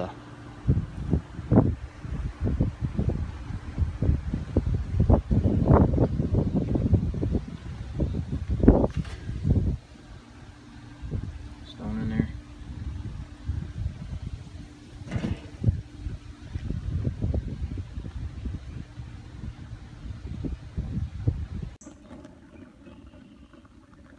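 Metal knocks and clanks from handling a Weber kettle grill and its steel KettlePizza insert as the lid and insert are lifted off. The first ten seconds are dense and loud with bumps and low handling rumble on the microphone. Single sharp clanks follow about nine and fifteen seconds in.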